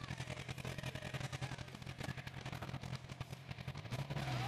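Motorcycle engine idling while stopped, heard faintly as a steady low hum through a helmet-mounted camera's microphone, with a dense, rapid patter of small ticks over it.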